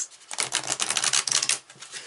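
A deck of tarot cards being riffled: a quick, dense rattle of card-edge clicks lasting about a second and a half.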